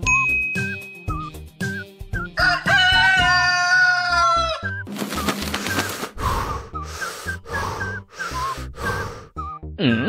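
Cartoon sound effects over soft background music: a steady bright ding, the gleam of a kitchen knife, for about a second. Then comes a long, wavering, animal-like call lasting about two seconds, followed by a string of short rushing bursts at about two a second.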